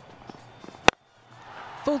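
Cricket bat striking the ball once, a single sharp crack about a second in, as a low full toss is hit straight back down the ground.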